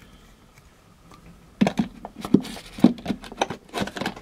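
Handling noise on a tabletop: after a quiet second and a half, a run of sharp clicks, knocks and rustles as hands put down a small glue tube and move things about.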